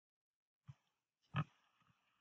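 Two faint keystrokes on a computer keyboard, each a short knock: one under a second in and a louder one about half a second later.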